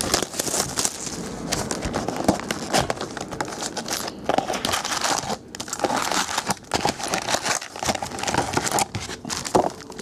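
Plastic shrink-wrap crinkling and tearing as it is stripped off a sealed box of trading card packs, then the foil-wrapped packs rustling as they are lifted out and stacked.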